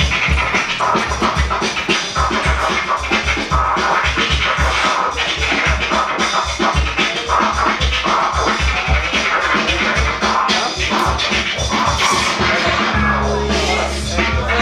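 Hip-hop beat with vinyl record scratching on DJ turntables cutting over it. About a second before the end, the beat's low hits give way to a held low bass note.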